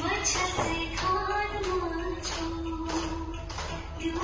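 Live stage music: children singing a melody in long held notes, with instrumental accompaniment and regular percussion beats.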